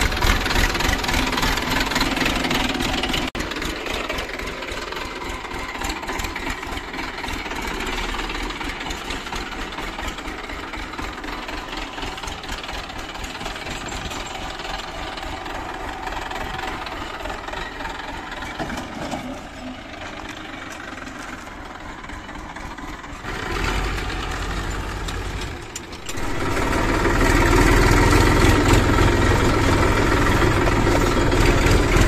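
Massey Ferguson 1035 DI tractor's three-cylinder diesel engine running, heard across several abrupt cuts at changing loudness. It is louder and deeper for the last few seconds.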